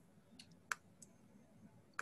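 A few faint computer-mouse clicks over near-silent room tone, the loudest a little before the middle.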